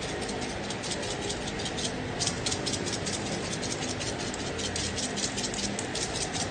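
Hand-held pepper grinder being twisted over a pot, a rapid run of ratcheting clicks as black pepper is cracked onto the pork.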